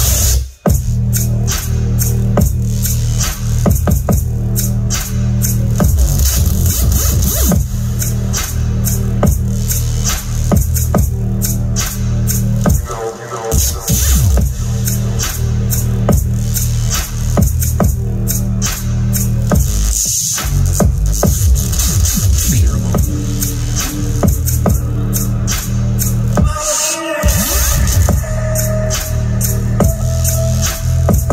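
Bass-heavy dubstep-style electronic music played loud through a Skar SDR-8 8-inch dual 2-ohm subwoofer in a 1 cubic foot ported box tuned to 34 Hz. The bass comes in suddenly at the start and drops out briefly a few times.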